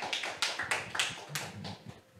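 Scattered hand clapping from a small audience in a meeting room, dying away near the end.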